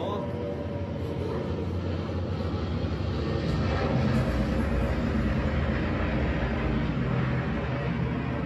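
Loudspeaker soundtrack of warplane engines droning, a low rumble that swells over the first few seconds and then holds steady.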